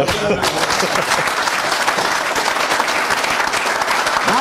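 Studio audience applauding, a dense steady clapping that breaks out all at once.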